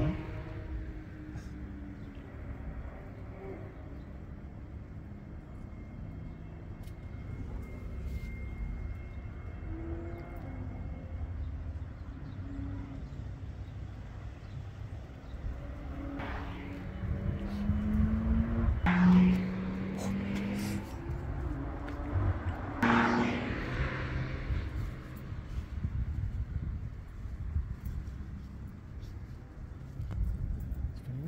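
Steady low outdoor rumble at the racetrack. Between about 16 and 24 seconds in, short rising and falling car engine notes from out of sight come through, loudest about 19 seconds in.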